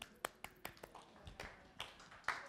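A handful of faint, short clicks and taps at irregular intervals, about seven in two seconds.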